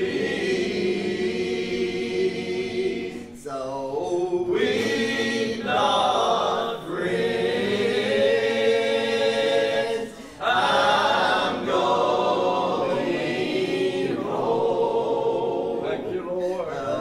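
A group of voices singing a hymn in long held phrases, with short breaks between phrases about three and a half and ten seconds in.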